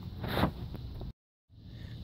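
A brief scraping rustle from the recording phone being handled. Past the middle the sound cuts out completely for a moment at an edit, then fades back in.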